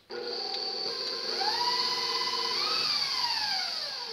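Electric stand mixer with a wire whisk running on high speed, whipping heavy cream with sweetened condensed milk. It gives a steady motor whine that starts abruptly, with one pitch rising and then falling, and fades away near the end.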